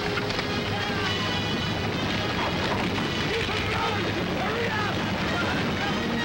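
Dramatic orchestral film score over a dense, steady rushing noise from a grass-fire sound effect.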